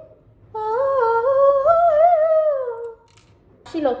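A girl humming a wordless tune, starting about half a second in, the pitch rising and falling and ending on a falling note near three seconds. A short rising vocal sound comes just before the end.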